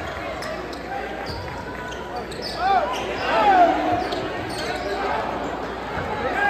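A basketball bouncing on the hardwood floor of a large gym during play, with crowd voices in the hall and a louder moment of high gliding sounds about halfway through.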